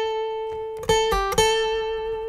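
Steel-string acoustic guitar playing single picked notes on the B string. The 10th-fret note rings, is picked again just under a second in, drops briefly to the 8th fret, then returns to the 10th fret and is left to ring.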